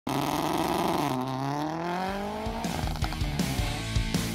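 A car engine held at high revs, dipping about a second in as the car launches, then climbing steadily in pitch as it accelerates. About two and a half seconds in, rock music with a steady drum beat takes over.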